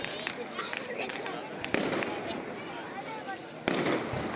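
Fireworks going off over a crowd's chatter: a couple of sharp cracks around two seconds in, then a louder, longer burst near the end.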